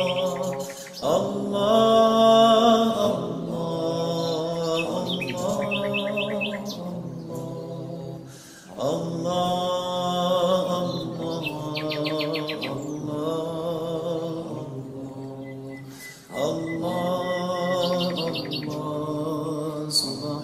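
Chanted dhikr of 'Allah': a voice singing long, drawn-out melodic phrases, three of them in turn. Birds chirp in short quick trills over the chant.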